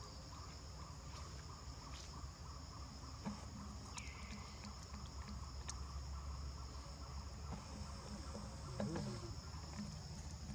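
A steady, high-pitched insect chorus, with a lower chirping that pulses several times a second. A short, wavering call is heard about nine seconds in.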